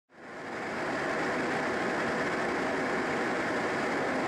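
Steady rushing airflow noise inside a Boeing 737-300 flight deck in cruise, fading in over the first second and then holding level.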